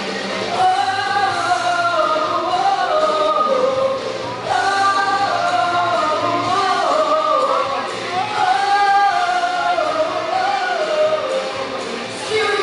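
A woman singing a pop song into a microphone over musical accompaniment, amplified through the sound system of a large hall, in melodic phrases of about four seconds each.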